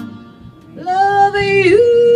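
A lone voice sings one long high note with no accompaniment after the band stops, gliding up a step near the end and holding the higher pitch.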